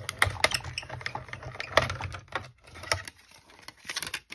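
Hand-cranked Stampin' Up! die-cutting and embossing machine being turned, the cutting plates and metal die rolling through the rollers with a run of clicks over a low rumble that stops about two and a half seconds in. A few lighter clacks follow as the plates are drawn out of the machine.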